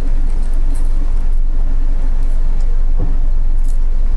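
Crisp crust of a bánh mì baguette being squeezed in the hands right against the microphone, crackling loudly over a heavy low rumble of handling noise. The crackle is the sign of a crunchy, well-baked crust, which the speaker calls the key to a good bánh mì.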